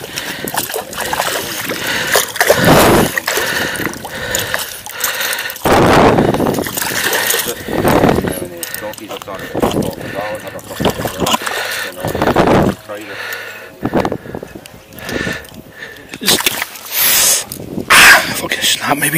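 Water splashing and sloshing around a landing net held in the shallows while a hooked fish is played in, in irregular loud bursts a few seconds apart.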